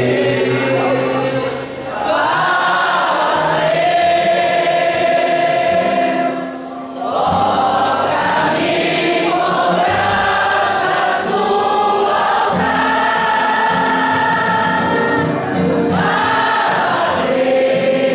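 A group of voices singing a gospel hymn together, holding long notes with brief breaks between phrases.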